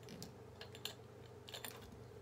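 Faint light clicks and taps of small plastic makeup containers being handled, a few scattered through the moment, over a low steady hum.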